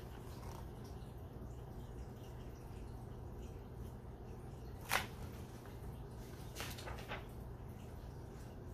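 Quiet room tone with a steady low hum, broken by one short click about five seconds in and a couple of fainter soft noises a little later.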